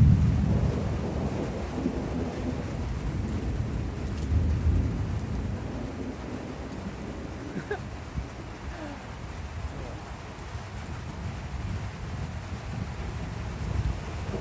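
Thunder breaking suddenly and loud, then rolling and rumbling on for several seconds with a second swell about four seconds in before slowly easing, over steady rain.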